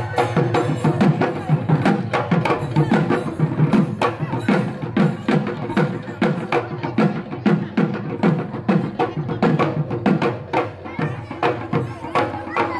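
Bihu music driven by a dhol: a fast, even run of low drum strokes, each dropping in pitch after the hit, with other music and possibly voices over it.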